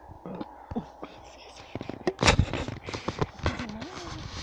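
Rustling and crackling of brush and camera handling noise as someone pushes through bankside vegetation. A dense run of sharp crackles and knocks starts about halfway through, the loudest just after it begins.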